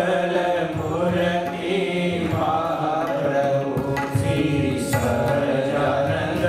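Male voice singing a Hindu devotional chant, accompanied by tabla, a two-headed barrel drum and violin.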